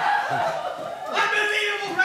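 Voices with chuckling laughter.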